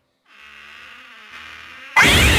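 A short silence, then a steady, quiet buzzing rattle, a horror sound effect, which gives way at the very end to a sudden loud jump-scare hit.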